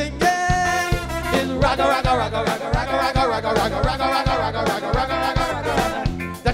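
Live soca band playing with a steady, regular drum beat. Held notes near the start give way to a wavering melodic line through the middle.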